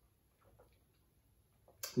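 Near silence with a few faint, soft clicks about half a second in; a man's voice starts just at the end.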